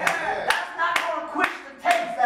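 Hands clapping in a steady rhythm, about two sharp claps a second.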